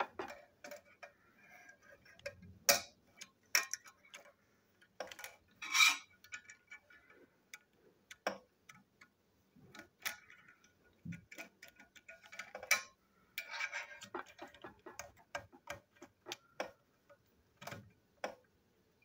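Irregular small clicks, taps and knocks of hard plastic toy train parts and a screwdriver being handled and fitted together, with a few louder knocks spread through.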